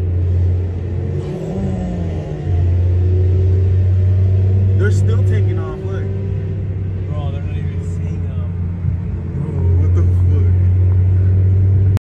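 Steady low engine and road hum from inside a car moving at freeway speed, swelling louder about two and a half seconds in and again near the end, with short bits of voice in the middle.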